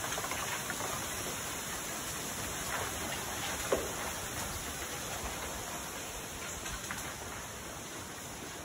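Bamboo stalks swaying in a breeze: a steady rush of wind through the leaves, with a few short knocks from the stalks, the sharpest about halfway through.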